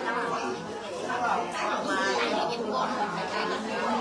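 Several people talking over one another in overlapping chatter.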